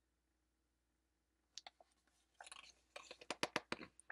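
Pages of a picture book being turned by hand: quiet for about a second and a half, then paper rustling and a quick run of crisp crackles and taps near the end.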